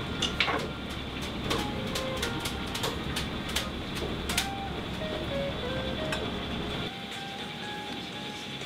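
Background music over kitchen noise: repeated sharp metallic clinks as the cook shakes noodle strainers over a steaming noodle pot to drain the noodles.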